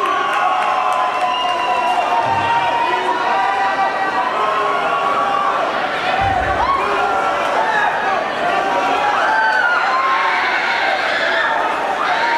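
Heavy-metal concert crowd cheering and shouting with many voices at once, the band not playing. A low thud sounds twice, about two and six seconds in.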